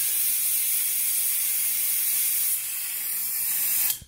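Compressed air hissing steadily through an air-driven venturi vacuum tester as it pulls a vacuum on a car's cooling system. The hiss dips slightly about two and a half seconds in, then cuts off sharply just before the end, as the air is shut off with the vacuum gauge near its target.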